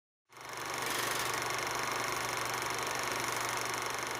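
Film projector running: a steady mechanical whir with hiss that starts abruptly from silence just after the beginning.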